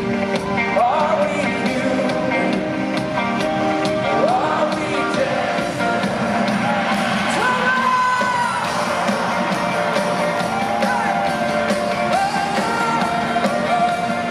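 Live rock band playing through a large hall's PA: a steady drum beat, keyboards and singing, with crowd whoops mixed in.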